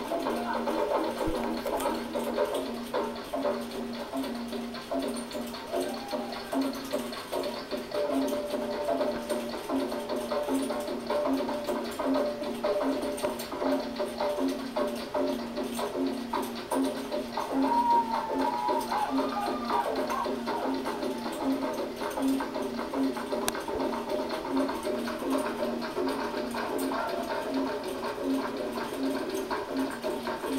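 Live hand-drum music: a low drum beat repeating evenly, with a voice singing over it and a steady hiss behind.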